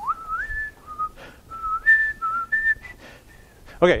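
A man whistling a slow tune of held notes that step up and down, with short breaks between phrases.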